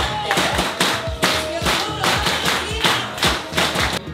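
A crowd clapping in rhythm, about three claps a second, over background music in a busy bar.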